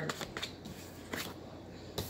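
Tarot cards being handled and drawn from the deck: a few soft card slides and taps, over a faint low hum.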